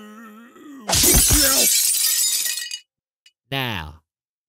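A pane of window glass smashing. It is a loud crash about a second in, and the breaking glass goes on for nearly two seconds before cutting off.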